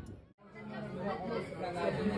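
A brief dropout, then indistinct chatter of several people talking in a restaurant dining room.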